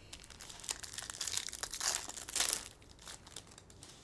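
A 2022 Bowman's Best trading-card pack wrapper crinkling and tearing as it is opened and the stack of cards is slid out. It makes a run of small crackles, loudest around two seconds in, that fades near the end.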